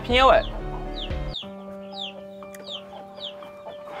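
Chicks peeping: many short, high, falling cheeps a few times a second, over quiet background music with held notes.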